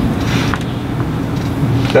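A steady low rumble and hiss of background noise, with no voice, and a few faint clicks.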